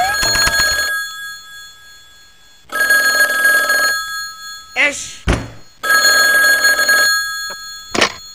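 Desk telephone ringing twice, each ring a little over a second long and about three seconds apart. A short vocal sound and a thump come between the two rings.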